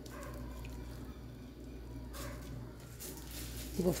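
Quiet room tone: a faint steady low hum, with two soft brushing noises about two and three seconds in.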